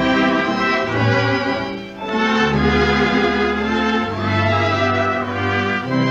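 A 1930s dance orchestra plays a waltz, heard from an electrically recorded 78 rpm shellac record. It is an instrumental passage without vocals, with a brief dip in loudness about two seconds in before the band swells again.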